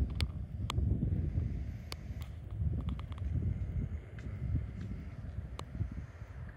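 Wind buffeting the microphone outdoors, an uneven low rumble that swells and eases, with a scatter of short, sharp clicks at irregular moments.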